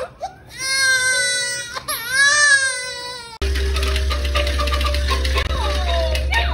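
A four-month-old baby girl crying in two long, high wails that cut off abruptly a little past halfway; the mother takes the crying at her father's touch for the start of stranger anxiety.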